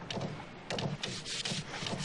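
A hand tool scraping on the wooden planking of a dhow hull, in repeated rough strokes.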